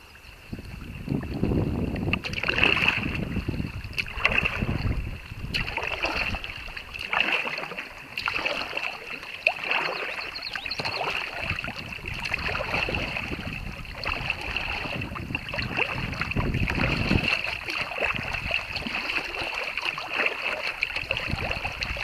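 Paddling a small kayak on choppy open water: paddle strokes splash and water sloshes against the hull in repeated swells every couple of seconds, with wind buffeting the microphone.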